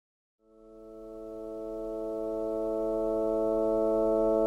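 A sustained chord of pure, steady keyboard tones fading in from silence just under half a second in and swelling slowly louder: the opening drone of the song.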